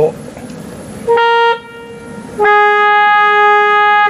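Two loud notes from the Nicholson & Lord organ's trumpet reed stop, sounded by working the key trackers inside the organ: a short note about a second in, then a slightly lower note held for about a second and a half. The held note is the out-of-tune trumpet note being sought for tuning.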